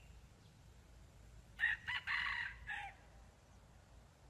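Red junglefowl rooster crowing once, starting about one and a half seconds in. The crow is short and broken into a few phrases, lasting just over a second.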